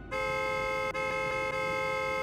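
Honda car's horn sounding a short blast, then, after a split-second break about a second in, a long steady blast.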